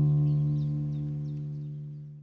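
The last chord of the outro music, plucked on acoustic guitar, rings out and slowly fades away.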